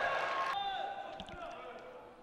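Faint sound of a large indoor gymnasium: hall reverberation and distant players' voices, fading lower over the two seconds.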